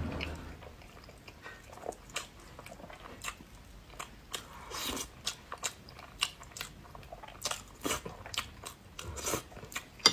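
Close-up eating of a boiled egg: chewing and wet mouth sounds with many small, sharp clicks scattered throughout as a metal spoon scoops egg from the shell in the hand.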